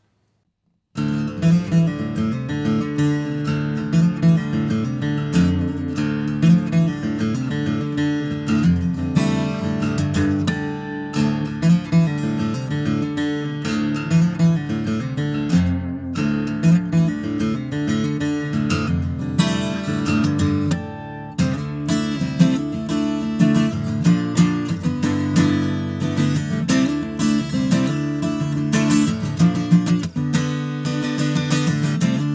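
Fenech Vintage Series D75 mahogany dreadnought acoustic guitar played solo, a continuous run of chords and single notes starting about a second in.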